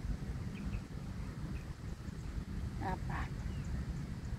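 Wind rumbling on the microphone, with a few faint high chirps about half a second in and a short vocal sound about three seconds in.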